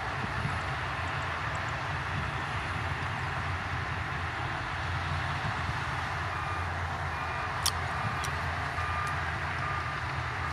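Diesel engines of Shantui DH17C2 bulldozers and dump trucks running steadily. A reversing alarm starts beeping about six and a half seconds in, and two sharp clanks come near the eight-second mark.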